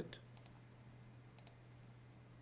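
Faint computer mouse clicks, a close pair about half a second in and another pair about a second and a half in, over near-silent room tone with a low steady hum.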